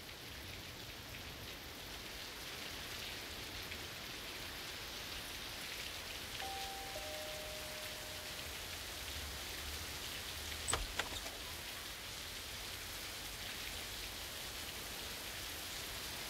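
Steady rain. About six and a half seconds in there is a faint two-note falling chime, and a sharp click comes a little before eleven seconds.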